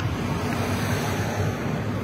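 Steady rumble and hiss of a car driving along a road: engine and tyre noise with air rushing past, no distinct events.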